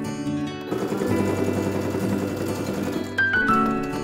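Brother Innovis A-150 electronic sewing machine stitching a seam in one run of about two and a half seconds, starting just under a second in and stopping near three seconds. Soft background music plays throughout.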